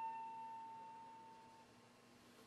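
A single note on an electric guitar's high E string, fretted at the 17th fret (an A), dying away as a clear, steady tone that fades out about one and a half seconds in.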